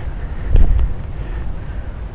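Wind buffeting a GoPro's microphone while cycling: a low, steady rumble with a stronger gust about half a second in.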